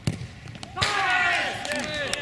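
A sharp thud of a football being struck, then, less than a second later, a short knock followed by loud shouting from several voices as the shot goes in for a goal.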